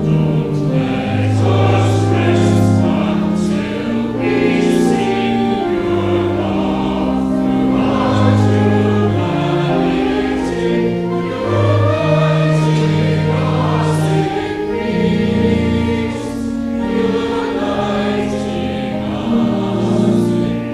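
Mixed choir of men and women singing in harmony, several held notes sounding together and moving to a new chord every second or so.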